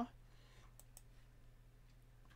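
Two faint computer mouse clicks close together about a second in, over a low steady hum.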